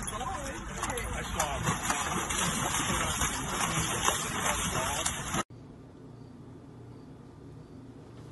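Water splashing and churning in a fountain basin as a dog wades and kicks through it, over the fountain's running water. The sound cuts off suddenly about five and a half seconds in, leaving quiet room tone.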